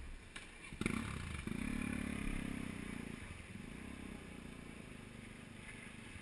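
Trail motorcycle engine running close by, rising sharply just before a second in and settling to a quieter steady note after about three seconds.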